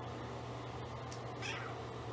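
A four-day-old pit bull puppy gives one short, high squeal that falls in pitch, about one and a half seconds in, over a steady low hum.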